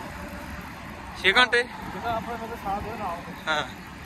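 Steady road and traffic noise heard from a moving bicycle, under a few short phrases of men's speech.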